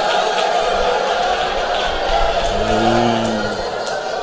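A congregation praying aloud all at once, a steady mass of many overlapping voices; about two and a half seconds in, one man's voice rises and falls clearly above the rest for about a second.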